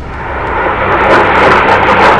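Rocket launching: a rushing roar that builds over the first second and stays loud.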